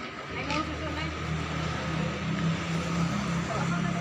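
A motor vehicle's engine running steadily at low revs close by, coming in about a second in, with faint voices of people around it.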